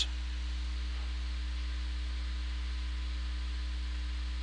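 Steady low hum with a faint hiss over it: the background noise of a computer microphone recording, with nothing else happening.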